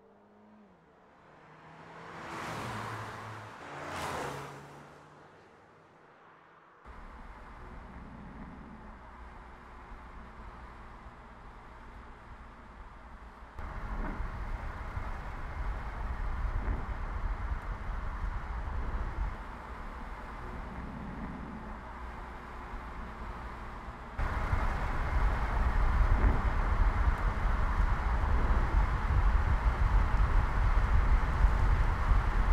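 A Mercedes-Benz A-Class hatchback passing by twice in quick succession, each pass a rising and falling whoosh. Then there is a steady rumble of tyres and road while the car drives. This changes level abruptly several times and is loudest near the end.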